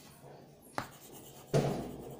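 Chalk writing on a blackboard: faint scratching strokes, with a sharp tap of the chalk about a second in, then a louder dull bump about one and a half seconds in that fades quickly.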